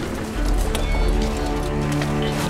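Film score music of sustained held notes, with a deep bass note coming in a moment after the start; a single sharp click sounds just before the middle.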